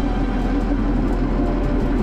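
Steady low rumble of a moving city transit vehicle, heard from inside the passenger compartment.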